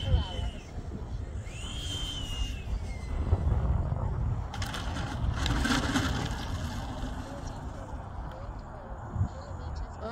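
Electric ducted fan of an RC model jet (Wemotec 100 mm EDF) whining as the model lands. About one and a half seconds in, a short burst of throttle raises the whine, which then falls away as the fan spools down. A rushing noise follows from about four and a half to six and a half seconds in, while the jet rolls out on the runway.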